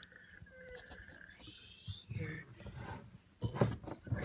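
Eight-day-old goldendoodle puppies vocalising: a thin, high, wavering squeak lasting about a second, then low grunts. A few sharp bumps near the end.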